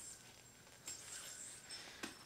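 Near silence: faint room tone with a single soft click a little under a second in.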